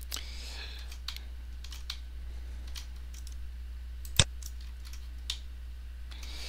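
Scattered light clicks of a computer mouse, about half a dozen, with one louder click about four seconds in, over a steady low hum.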